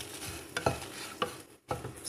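Wooden spatula stirring fried dried red chillies and garlic in a nonstick pan, with a handful of sharp scrapes and taps against the pan over a faint sizzle. The sound drops out briefly about three quarters of the way through.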